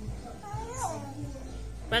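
A small child's soft, wordless vocal sounds: a couple of short, faint rising-and-falling glides about half a second to a second in, over a steady low hum.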